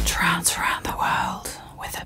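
A whispered voice over faint sustained low tones, with no beat.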